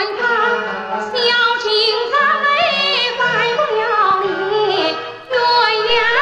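A woman singing a Yue opera aria in a high, wavering, ornamented voice over instrumental accompaniment, with a short pause between sung lines about five seconds in.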